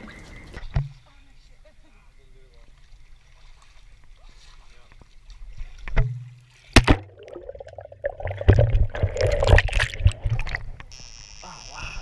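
Camera in a waterproof case submerged in a swimming pool: a muffled, quiet stretch underwater, then a sharp knock about six seconds in and a few seconds of loud splashing and sloshing water.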